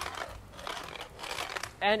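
WeWalk smart cane rattling as it is used, a run of irregular clattery clicks and scrapes. The rattle is a sign of a loosely built handle unit, and the owner calls it unacceptable and extremely noisy.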